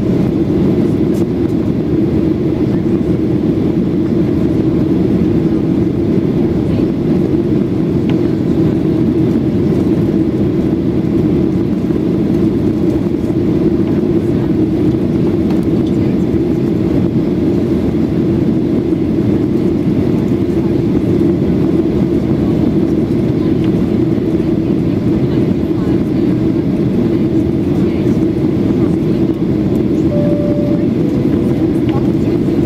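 Steady cabin drone of a Boeing 737-800 climbing, heard from a window seat behind the wing: the hum of its CFM56-7B turbofan engines, with a steady low tone under a constant rush of airflow.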